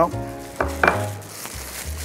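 Thin plastic bag crinkling and rustling as raw pork steaks are handled and pulled out of it, over faint background music.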